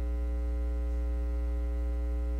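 Steady electrical mains hum with a ladder of evenly spaced buzzing overtones, running unchanged and almost as loud as the speech around it.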